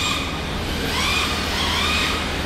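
Radio-controlled drift cars' electric motors whining under throttle, the pitch swinging up and then down again roughly once a second, over a steady low hum.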